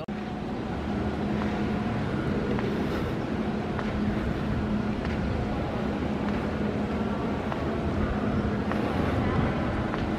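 Steady background noise inside a large aircraft hangar: an even rumble with a constant low hum and faint distant voices.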